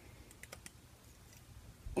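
A few faint small clicks of rubber loom bands being stretched and twisted onto the plastic pins of a Rainbow Loom, mostly about half a second in with one more near the end.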